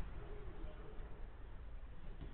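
Faint, steady background noise with a low rumble, and a brief distant voice shortly after the start.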